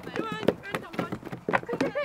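Children's excited, high-pitched shouts and cheers as a group runs across dry ground, with quick footfalls and light knocks from the shovels and buckets they carry.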